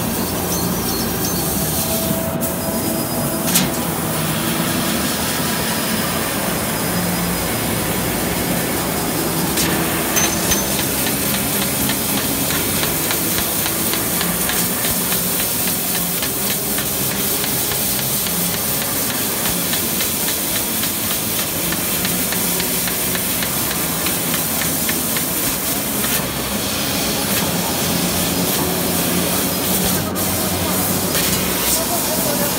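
XQL-3015 500 W fiber laser cutting machine cutting 0.8 mm stainless steel sheet: a steady hiss from the cutting head, with one sharp click about three and a half seconds in.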